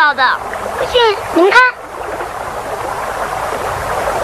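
A high voice making a few short wordless sounds that rise and fall in pitch during the first second and a half, followed by a steady rushing noise like flowing water.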